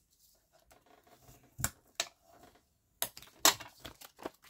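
Handling of folded paper and a bone folder on a cutting mat: faint paper rustling, then four sharp light clicks in the second half as the bone folder is set down and the paper is moved.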